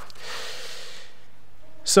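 A man drawing one breath in close to a microphone, a soft hiss lasting about a second, followed near the end by the start of his next word.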